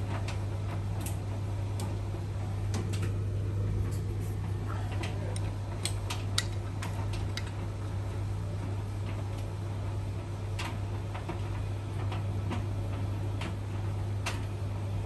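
Beko WTK front-loading washing machine tumbling a wash load: a steady low hum, with irregular clicks and taps from the load turning in the drum.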